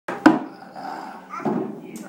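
A single sharp knock just after the start, with brief indistinct voice sounds around it and again about one and a half seconds in.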